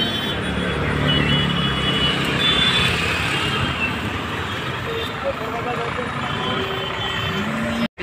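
Road traffic on a busy town street: a steady din of engines and tyres with a motorcycle passing close by and voices mixed in. It cuts off suddenly near the end.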